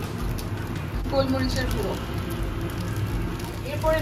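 Rice frying in a steel kadai on a gas stove: a steady sizzle with light crackling over a low, even rumble.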